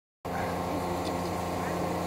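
A steady mechanical hum that starts just after the recording begins, with faint voices murmuring behind it.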